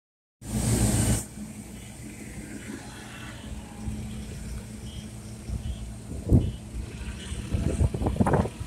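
Forklift and truck engines running steadily in a loading yard, with a loud rush of noise in the first second and a sharp knock about six seconds in.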